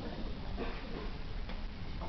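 A few faint ticks over steady room noise in a hall.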